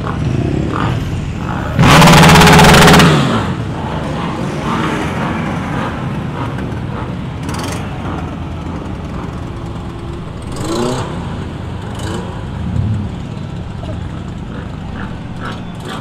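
Motorcycle and car engines running as a slow procession of vehicles rolls past. About two seconds in, a motorcycle revs very loudly close by for a little over a second. After that, steady engine rumble continues from classic Ferrari sports cars moving off at walking pace.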